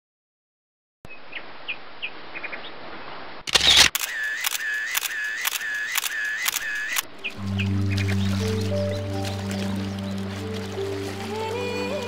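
Outdoor ambience with small bird chirps, then a loud DSLR camera shutter click about three and a half seconds in, followed by a run of shutter clicks about two a second for three seconds. Music with sustained low chords starts about seven seconds in, with water splashing over it.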